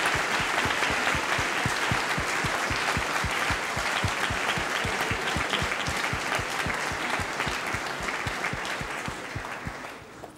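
Audience applauding, a steady dense clapping that dies away near the end.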